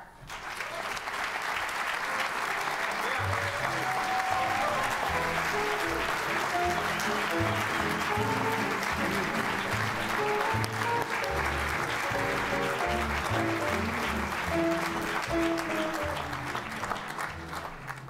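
Audience applauding over playing music; the clapping starts at once and the music's notes come in about three seconds later.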